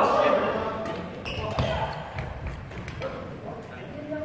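Players' voices in a large gym hall, loudest in a shout-like burst at the very start, with scattered sharp knocks of rackets hitting the shuttlecock and footfalls on the wooden court during a badminton doubles rally.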